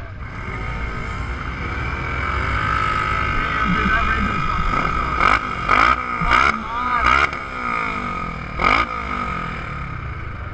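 Polaris RZR XP1000 side-by-side engines running at idle on a race start line, growing a little louder over the first few seconds. About halfway in come several short, sharp sounds, with the last one near the end.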